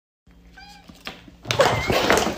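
A house cat gives one short meow, followed about a second and a half in by a sudden loud clatter.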